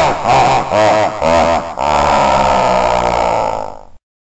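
Loud, distorted growling voice effect: a run of short pitched outbursts, then one long held growl that fades out and stops just before the end.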